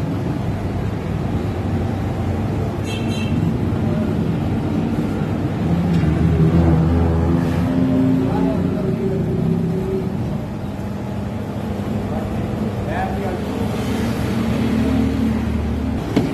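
Steady low mechanical hum with traffic and voices in the background, and a brief clink about three seconds in.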